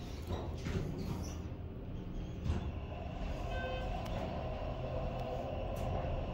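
Schindler HT 330A hydraulic elevator: the doors close with a few knocks in the first second or so, then the car travels down with a steady low hum that slowly builds. A short high tone sounds about midway.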